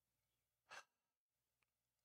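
Near silence, broken about three quarters of a second in by one brief, faint breath from a man.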